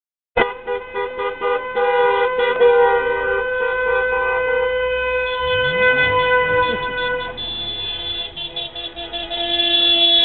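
Several car horns honking together in a wedding procession: choppy short toots at first, then long held blasts that overlap and change pitch partway through, cutting off just after the end.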